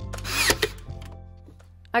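Cordless brad nailer firing into wooden trim about half a second in: a brief motor whirr ending in a sharp snap. Background music plays under it and fades out.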